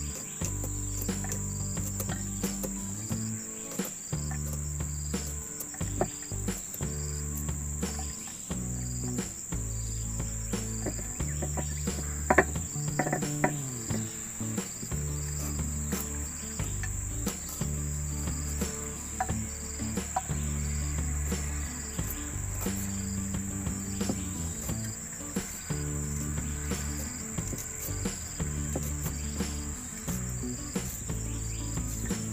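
A steady drone of forest insects with a short chirp repeating about once a second, and scattered small clicks. One brief, louder sound comes about twelve seconds in.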